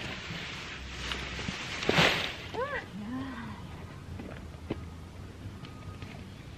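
Uprooted bean vines rustling as armfuls of leafy stems are dragged and dropped onto the grass, loudest about two seconds in. A few short voiced sounds follow just after.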